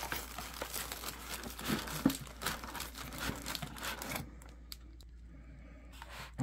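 Cardboard box and plastic packaging being handled: irregular rustling and crinkling as the box is opened and the tray of plastic-bagged parts comes out. It drops to a quieter rustle about four seconds in.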